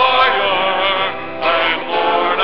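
Church choir singing a hymn, several voices holding and moving between sung notes.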